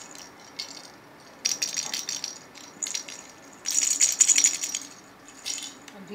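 Hollow plastic cat toy ball with a rattle inside, rattling in about five short bursts as it is shaken and rolled, the longest and loudest about four seconds in.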